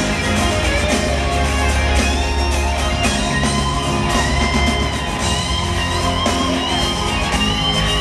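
A live band playing, with acoustic and electric guitars over a steady bass, loud and echoing in a large hall.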